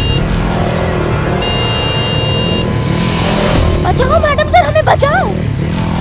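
Motorcycle engine running steadily as the bike is ridden along, with a voice shouting about four seconds in.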